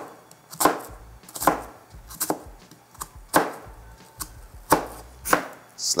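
Chef's knife slicing down through a halved red onion onto a cutting board, one sharp chop about every three-quarters of a second, about eight in all. These are the cross-cuts that turn the scored onion into a fine dice.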